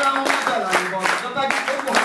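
Audience clapping a steady beat together, about three claps a second, with voices over the claps.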